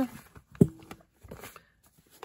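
Handling noise from a sewn Tyvek journal cover being picked up and moved on a table: one soft knock a little over half a second in, then small rustles and clicks.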